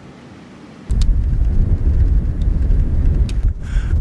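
Wind buffeting the microphone on an exposed mountain pass: a faint hiss, then about a second in a sudden loud, uneven low rumble that carries on, with a few faint clicks.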